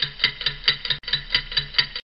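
Clock-ticking sound effect, about four to five sharp ticks a second over a low pulsing tone, stopping suddenly at the end.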